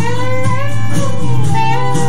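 Clarinet playing a sustained melody, gliding between notes, over a backing track with guitar.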